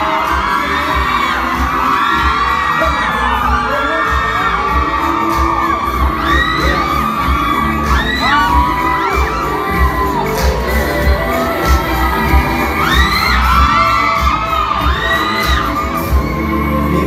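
A pop song played live over a PA with a steady bass beat, mixed with a crowd of fans screaming and cheering.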